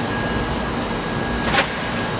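Steady rushing background noise with a faint steady hum, broken by one brief click about one and a half seconds in.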